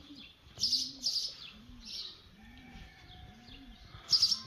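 A dove cooing: a steady run of low, rounded coos, about one every half second. Small birds chirp high a few times in the first two seconds.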